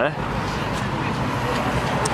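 A car engine idling steadily nearby, a low even hum, with faint voices in the background.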